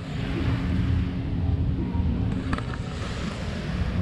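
Outdoor background rumble with wind buffeting the microphone and a steady low hum underneath, with a brief tick about two and a half seconds in.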